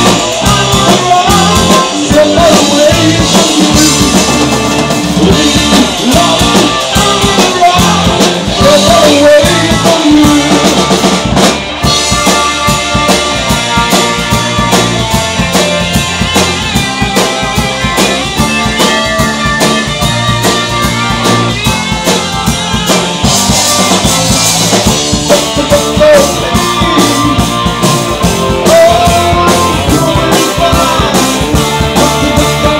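A live rock band playing loudly with a steady, driving drum-kit beat, in an unbroken stretch of the song.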